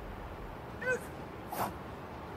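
Two short vocal cries over faint background ambience: a brief pitched yelp just under a second in, then a breathier, noisier cry about half a second later.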